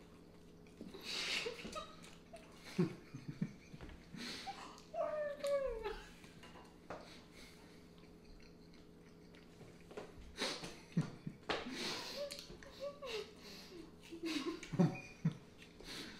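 Two people chewing mouthfuls of marshmallows fast, with breathing through the nose and muffled, stifled laughter and hums through full mouths. The sounds come in irregular bursts, with a quieter stretch in the middle.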